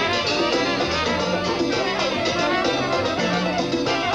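Live Latin dance band playing a mambo: violin over timbales, congas and bass, with a steady driving beat.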